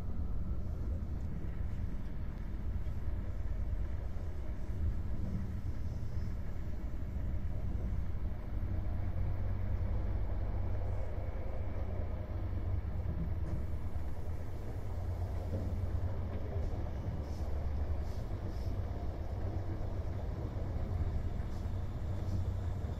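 Inside an InterCity passenger coach running along the track: a steady low rumble of the wheels and running gear, with no breaks or pauses.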